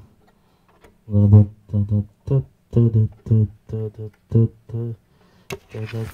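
A man's voice repeating short sung or spoken syllables in a steady rhythm, about three a second: a microphone check through the mixer's channels. A sharp click near the end.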